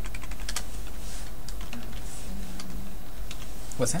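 Typing on a computer keyboard: a quick run of key clicks in the first second, then a few scattered keystrokes.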